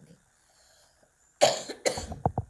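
A woman coughing into her fist: two hard coughs about a second and a half in, after a quiet start.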